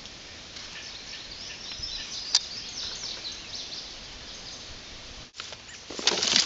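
Outdoor background noise with birds chirping again and again in short high calls, and one sharp click about two seconds in.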